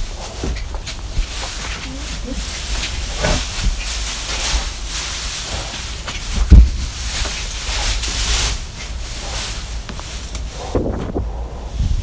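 A foal moving about a wooden stall on straw bedding, hooves shuffling and rustling through the straw, over a steady hiss and low rumble. One loud thump comes about six and a half seconds in.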